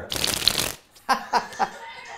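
A deck of playing cards run off rapidly in a fast flurry of card flutter, lasting under a second, followed by a brief laugh.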